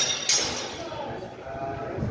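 Wooden singlesticks clacking together twice in quick succession, then a short drawn-out vocal cry from one of the fencers.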